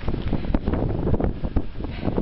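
Wind buffeting the microphone: a low, uneven, gusty rumble.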